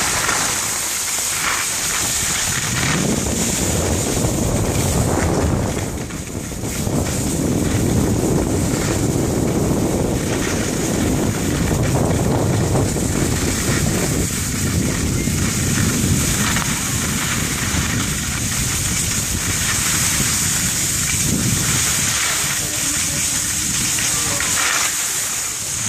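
Wind rushing over the camera microphone, with the steady hiss and scrape of skis sliding on packed snow as the filming skier glides downhill. The rush dips briefly about six seconds in.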